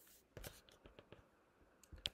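Faint, scattered clicks of computer keys: a small cluster about a third of a second in, a few more through the middle, and another pair near the end.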